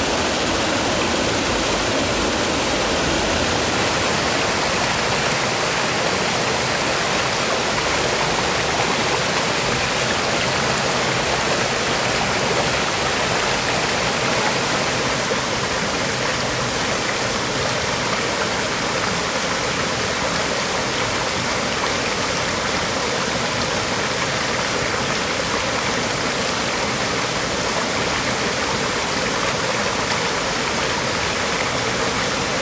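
Steady rushing of a mountain stream spilling over small cascades, slightly softer in the second half.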